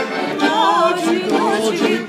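A woman and a man singing a song together to piano accordion. Their voices waver in quick ornamented runs from about half a second in.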